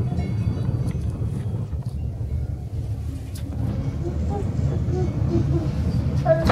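Steady low rumble and wind noise inside a small cable-car gondola cabin as it travels along the cable, with a few faint short voice sounds in the second half.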